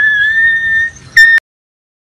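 A person whistling: one long whistle that slides up and then holds, followed by a short second whistle, cut off abruptly by an edit.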